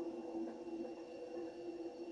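Steady electronic hum of a device sound effect in a TV drama's soundtrack, a low sustained tone with a faint high whine, played through a television speaker.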